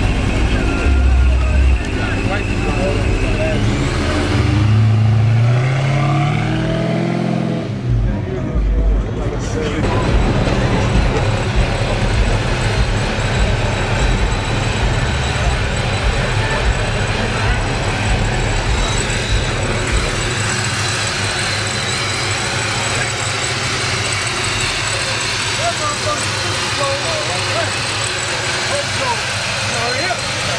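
Supercharged engine of a 1967 Pontiac LeMans running: revs rising and falling in the first several seconds, then settling into a steady idle.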